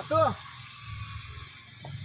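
A short spoken word at the very start, then quiet outdoor background with a faint low rumble and a small knock near the end.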